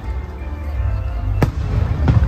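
Aerial firework shells bursting: one sharp bang about one and a half seconds in and another at the very end, over a steady low rumble.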